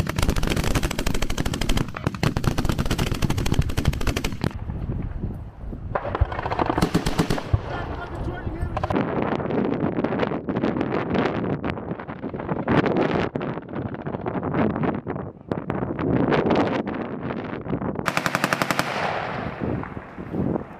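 Live gunfire. Long rapid bursts from a belt-fed machine gun fill the first few seconds, then comes a stretch of scattered, irregular shots from several weapons, and another rapid burst near the end.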